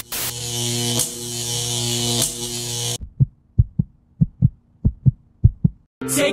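Edited-in glitch sound effect: a static hiss with a steady buzzing hum for about three seconds that cuts off abruptly. It is followed by about ten short, deep bass thumps in an uneven rhythm.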